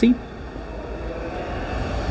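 Steady low rumble of background noise in a large exhibition hall, with no distinct events.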